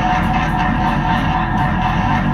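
Live improvised ambient rock jam: a dense, steady wash of band sound with electric guitar, unbroken throughout.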